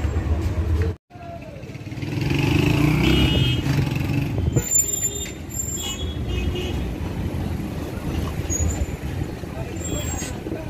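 Busy street sound of motor traffic passing, with voices around. A brief break comes about a second in. After it the traffic noise swells and is loudest from about two to four and a half seconds.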